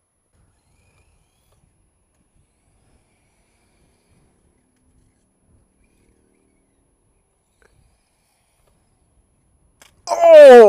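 Near silence: only faint background noise, with a few faint ticks.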